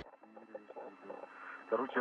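Faint, narrow-band radio voice chatter from the spacewalk communications loop, with a voice becoming clearer near the end.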